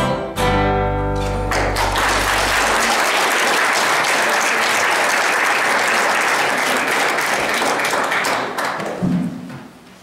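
A men's choir with acoustic guitar holds the last chord of a song, which stops about a second and a half in. The audience then applauds for about seven seconds, and the clapping dies away near the end.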